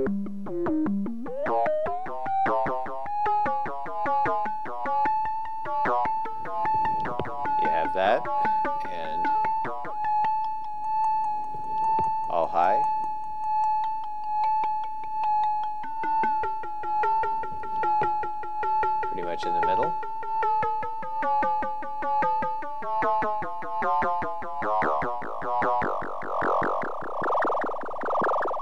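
Buchla 200e modular synthesizer FM patch, a sine oscillator frequency-modulated by a second sine oscillator, played in a high range. The pitch rises in the first two seconds and then holds a steady high tone under a rapid pulsing while its overtones shift, changing the timbre. Near the end it breaks into a dense buzzing cluster.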